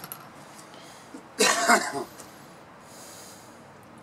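A person coughing: a short run of coughs lasting about half a second, about a second and a half in.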